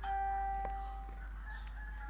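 A chime sound effect: a ringing tone starts, is struck again about two-thirds of a second in, and fades out after about a second.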